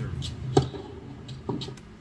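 Tennis racquet striking the ball on a serve: one sharp pop about half a second in, followed by a second, quieter knock about a second later.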